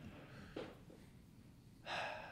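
A man's quick, sharp intake of breath near the end, in a quiet small-room pause, with a fainter breath about half a second in.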